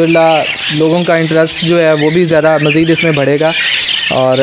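A man talking over the constant high chattering and chirping of many small caged parrots.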